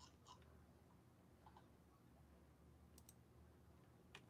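Near silence, with a few faint clicks: one about half a second in and a quick pair about three seconds in.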